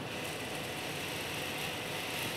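Faint steady hiss of background noise with no distinct sound event.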